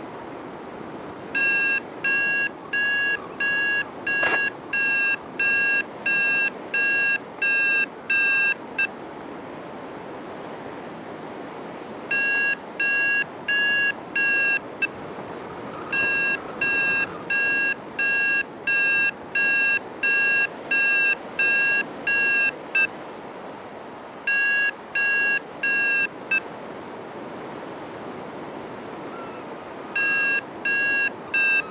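Paragliding variometer beeping in runs of short beeps, about two a second, with pauses between the runs: the climb tone that signals rising air. A steady rush of wind on the microphone runs underneath.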